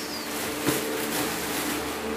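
Clear plastic grocery bag crinkling and rustling as it is handled, a fast irregular crackle with one sharper tick a little past halfway.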